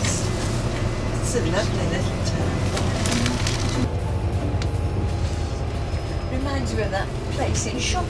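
Bus engine and cabin rumbling steadily from inside as the bus drives along, under indistinct voices and music.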